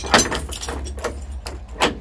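A bunch of keys jangling and clicking against a metal padlock as a key is fitted into it, with several sharp clicks spread through the moment.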